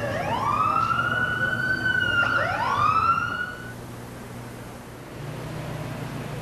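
Emergency-vehicle siren wailing on a city street: one wail rises at the start and holds, a second overlapping wail climbs about two seconds in, and the sirens stop about three and a half seconds in.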